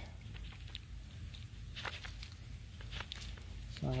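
Faint rustles and a few soft scrapes of a plastic scoop digging into and lifting loose garden soil, over a low steady rumble.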